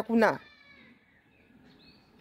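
A person's voice finishing a short spoken phrase, then a faint, high wavering tone for under a second, then quiet.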